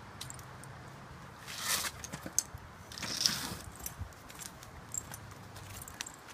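A dog being taken out of a wheelchair harness: scattered clicks and jingles of buckles and metal fittings, with two louder scuffing, rustling noises about a second and a half and three seconds in.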